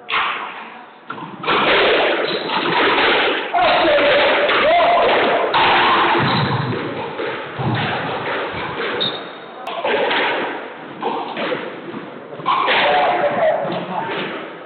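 Squash ball struck by rackets and hitting the court walls during a rally: repeated thuds that ring in the enclosed court, with people talking.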